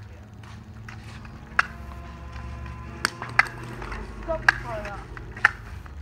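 A few sharp clicks and taps, unevenly spaced, over a low steady rumble, with faint voices in the background about two-thirds of the way through.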